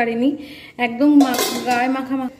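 Metal cookware clattering as a pan lid and pots are handled on a kitchen stove, with a short, sharper clatter around the middle, over a woman's voice.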